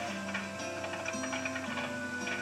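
Film music with quick tap-dance taps over it, heard through a television's speaker.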